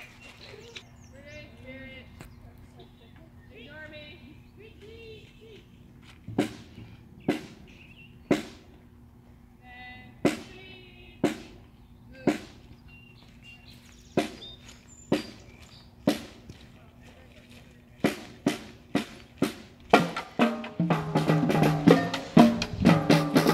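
Marching band drums tapping a steady beat: sharp single drum strikes about a second apart in groups of three with a rest between. Near the end the strikes quicken and the full band comes in playing, brass and drums together. Faint voices chatter in the first few seconds.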